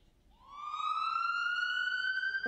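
A siren starting its wail: one tone that comes in about a third of a second in and rises in pitch, then levels off high.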